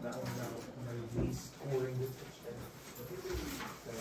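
Low, indistinct voices of people talking in a classroom, with a soft knock or two.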